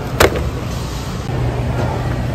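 A single sharp click of a plastic-wrapped meat tray knocking against the other packs as they are handled in a shopping cart, over a steady low hum.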